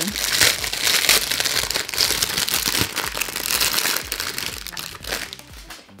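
Crinkly packaging being handled, a continuous crackle that is dense at first and thins out near the end.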